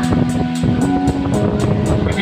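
A live band playing: held keyboard notes that step up in pitch about half a second in, over a steady drum beat, with no singing.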